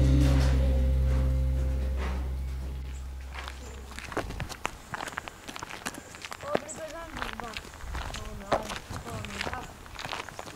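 A sustained low music chord fades out over the first few seconds. Then come the footsteps of people walking on an asphalt road, a series of short, irregular steps, with a few brief bits of voice in the second half.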